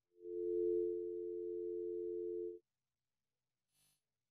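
A steady electronic tone made of two pure pitches sounding together, held for about two and a half seconds and then cut off suddenly. A brief faint click follows near the end.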